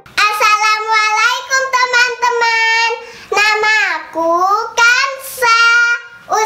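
A young girl singing in a high voice, in short phrases with held notes and gliding pitch.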